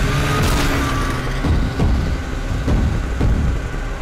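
Cartoon vehicle engine sound effects, a snowmobile and a truck running, over background music.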